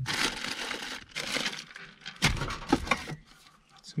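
Rummaging through a wooden storage drawer: crinkling and rustling of packaging for about the first second, then a few sharp knocks and clatters as items are shifted and pulled out.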